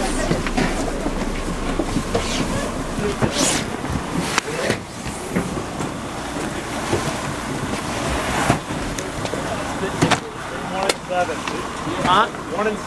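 Handling noise from a hand-held camera rubbing and knocking against clothing, with several sharp knocks, over a steady background of a bus engine running and wind on the microphone. Indistinct voices are heard now and then.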